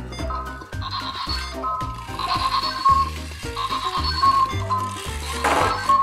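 Background music: a bouncy cartoon tune with a steady bass line and a melody on top. A short noisy burst comes in just before the end.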